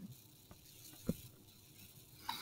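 Quiet room tone with two faint short clicks, about half a second and about a second in.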